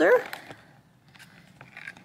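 A spoken word trailing off at the start, then faint clicks and soft rubbing of a handheld camera being lifted off its holder.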